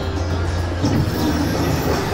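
Slot machine game music and sound effects from a Cash Express Mega Line cabinet during its free-games bonus, with a new, fuller sound effect starting a little under a second in.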